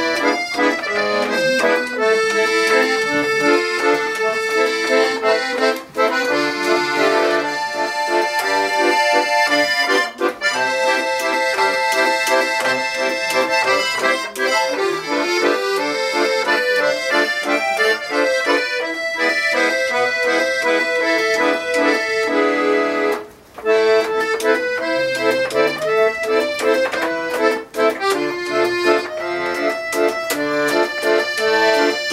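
Paolo Soprani piano accordion played solo: a continuous tune of treble melody over sustained chords, with a brief stop about three-quarters of the way through before playing resumes.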